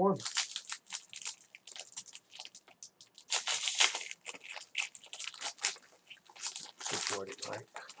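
Foil wrapper of a Black Gold football card pack being torn open and crinkled by hand: a run of dry, crackly rustles, loudest about three to four seconds in.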